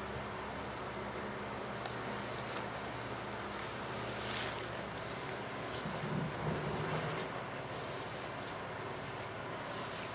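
Steady background hiss, with a brief faint rustle about four seconds in and faint low sounds around six to seven seconds.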